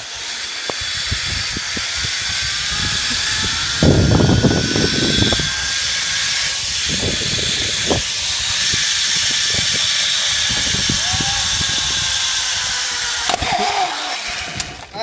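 Zipline trolley pulleys running along a steel cable at speed: a whine that rises in pitch over the first several seconds and then slowly falls, under a steady hiss. Wind buffets the microphone throughout, strongest about four seconds in.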